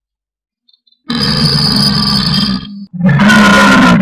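A man's long, loud burp, twice: the first about a second in, lasting well over a second, and a second, louder one near the end.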